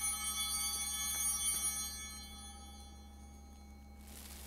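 Altar bell rung at the elevation of the consecrated host: several clear high bell tones fading away over about three seconds.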